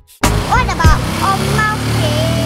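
Road traffic passing, a steady rush of car noise, with a few brief high bits of a child's voice over it.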